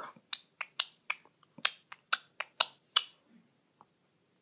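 A finger tapping on a touchscreen: about ten short, sharp taps over three seconds, unevenly spaced.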